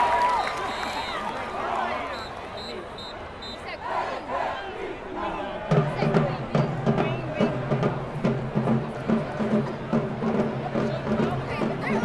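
Stadium crowd cheering and shouting. About a second in come four short, evenly spaced high whistle blasts. From about halfway a marching band starts playing, with low brass and drums.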